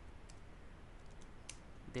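A few faint, separate computer keyboard keystrokes as a word is typed, the clearest about one and a half seconds in.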